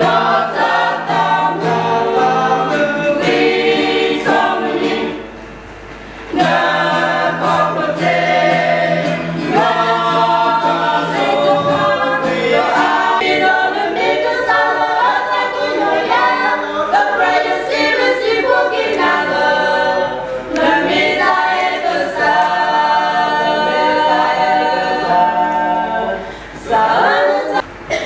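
A small group of women, men and children singing a hymn together, with a short break in the singing about five seconds in.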